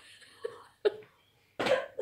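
An elderly woman coughing: two short bursts around the middle, then a louder, rougher cough near the end.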